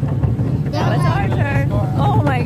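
Human voices in long, wavering pitched calls, strongest from under a second in, over a steady low rumble.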